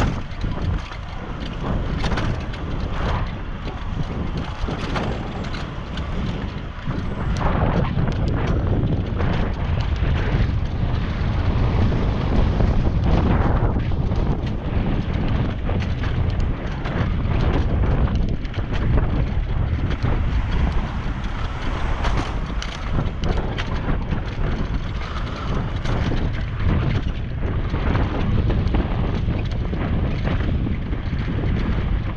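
Wind buffeting an action camera's microphone while cycling at speed: a steady low rumble with gusty surges and pops, mixed with tyre and road noise.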